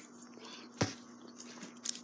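Quiet pause with a faint steady hum and one sharp click about a second in, a mouth or chewing noise from someone eating a pretzel.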